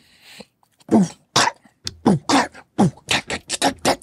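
A man beatboxing a drum beat with his mouth: a quick, rhythmic run of vocal kick and snare sounds starting about a second in.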